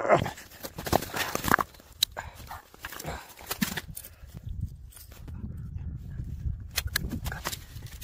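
Irregular crunching, scraping and clicking of hard, icy snow as it is dug at by fingers and then poked with a stick.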